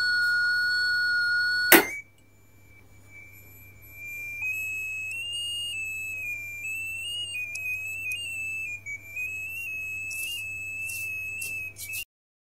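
The small speaker of a clybot C6 Arduino robot sounding a light-controlled tone: a steady high beep, then a click about two seconds in. After that a higher tone wavers in small steps as a hand shades the robot's photoresistor 'eye', because less light raises the pitch.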